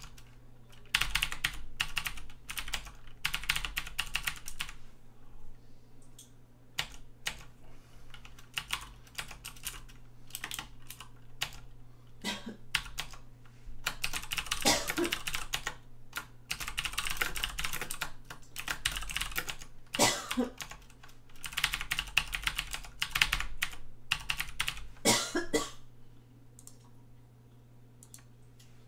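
Computer keyboard typing in quick bursts of a few seconds with short pauses between them, over a low steady hum. The typing stops near the end.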